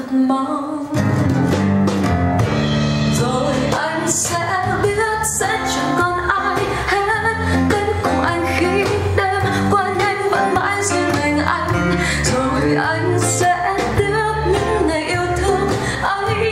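A recorded song with a singer and guitar played back on a hi-fi system: a Rogue Audio Cronus Magnum III tube amplifier driving JBL L100 Classic loudspeakers, heard in the room. A fuller bass comes in about a second in.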